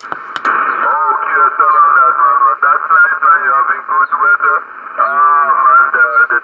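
A distant station's voice received on a Yaesu FT-840 HF transceiver's speaker: thin, narrow-band single-sideband speech over steady band hiss, after a brief click at the start.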